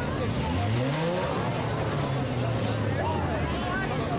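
Four-cylinder enduro race car engine revving up, its pitch rising for about a second and then holding steady for a couple of seconds, with people talking nearby.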